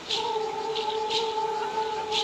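A chanting voice holds one long steady note, with short hissing strokes at roughly one-second intervals.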